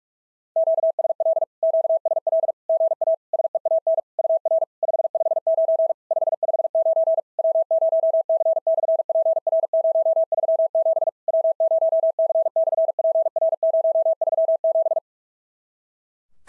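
Morse code sent at 45 words per minute as a single steady beep tone keyed rapidly on and off, starting about half a second in and stopping about a second before the end. It sends an amateur-radio SOTA contact reply carrying a 559 signal report and a summit reference.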